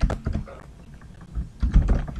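Computer keyboard typing: a few keystrokes near the start, then a quick run of keys near the end as a short word ("public") is typed.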